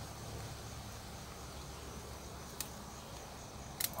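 Faint steady chirring of insects, with two short sharp snips of scissors cutting a kale stalk, one past the middle and one near the end.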